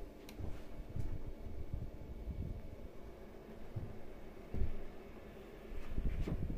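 Small electric fan heater running on its higher fan speed: a steady blowing hiss with a faint motor hum. A few dull low knocks sound over it, the strongest about halfway through.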